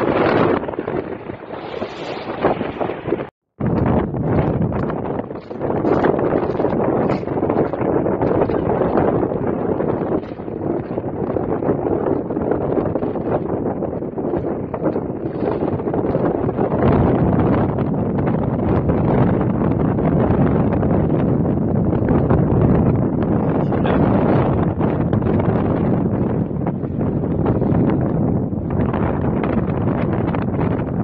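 Wind buffeting the microphone, a steady rumbling rush throughout, broken by a brief moment of silence about three seconds in.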